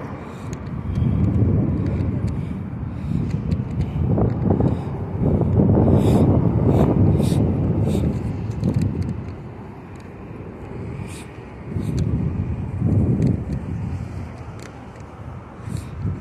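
City street traffic: vehicles passing with a low rumble that swells and fades, loudest around five to eight seconds in and again around twelve seconds in.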